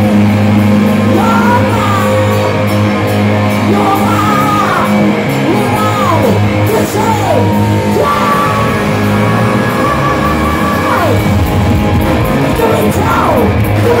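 Hard rock band playing live: electric guitars, bass and drums, with a male singer's high, sliding vocal lines over the top.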